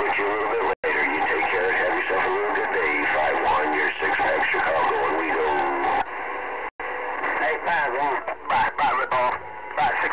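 Voices over a Galaxy CB radio's speaker, several talking over one another and unintelligible, in thin radio-band audio. The audio cuts out for an instant about a second in and again near seven seconds; after about six seconds the signal is weaker and choppier.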